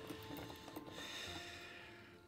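Small desk globe spun on its stand: a fast clicking rattle that thins out and fades over about the first second as the globe slows to a stop.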